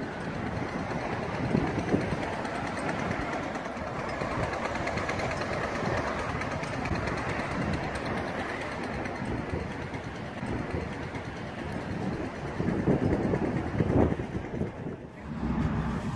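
Road traffic passing on a street: a steady rumble of vehicles, growing louder near the end as something passes close.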